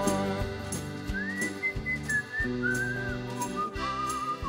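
Live band playing on after the last sung line with a steady drum beat, and from about a second in a whistled tune over it, a single thin note gliding and wavering up and down.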